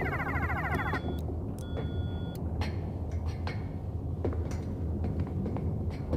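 A rapidly pulsing electronic distress signal, a sci-fi sound effect, cuts off abruptly about a second in as it is switched off. A few short electronic console tones follow, over a steady low hum of starship ambience and soft underscore.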